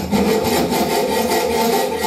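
Hand file rasping along the cut edge of a steel angle bar held in a bench vise, deburring the sharp edge left by cutting it down.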